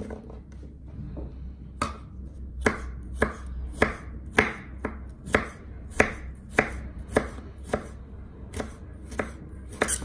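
Kitchen knife chopping on a cutting board in a steady rhythm of about two strokes a second. The strokes begin about two seconds in.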